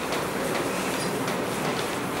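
Steady classroom background noise: a continuous murmur of room noise and faint, indistinct students' voices.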